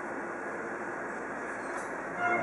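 Steady room noise and recording hiss, with no music or voices.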